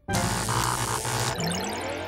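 Cartoon soundtrack music and sound effects: a sudden loud crash right after a moment of silence, then a twinkling run of quick high electronic notes in the second half.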